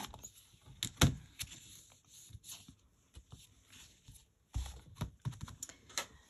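Hinged clear plastic lid of a MISTI stamp-positioning tool being closed and handled. There is a sharp knock about a second in, then light clicks and rustles, and a few more knocks near the end as the lid is worked.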